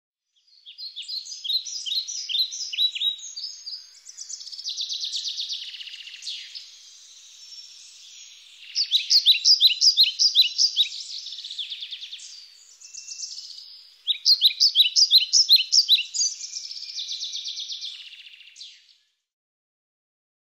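A songbird singing: series of quick, sharp chirps alternate with rapid trills, three rounds of each, stopping about a second before the end.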